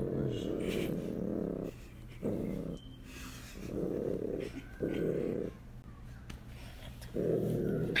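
Young bobcat rumbling low in its throat, in five bouts of half a second to two seconds, broken by short pauses.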